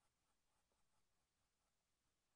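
Near silence, with a run of very faint short strokes of a paintbrush on canvas.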